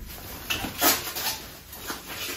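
Plastic packaging crinkling and light handling noises in a few short bursts, the loudest about a second in, as a plastic-wrapped air fryer crisper plate is taken out and set down.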